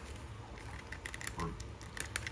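A few faint clicks and taps of a plastic McFarlane DC Multiverse Man-Bat action figure being handled as its mid-torso swivel joint is turned, over a low steady hum.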